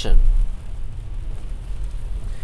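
The last word of speech trails off at the start, with a brief low thump. Then comes a steady low rumble from inside a car's cabin.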